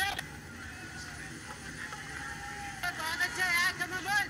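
Cricket broadcast sound: a steady background of ground noise with faint pitched sounds, then a man's voice talking over it in the last second or so.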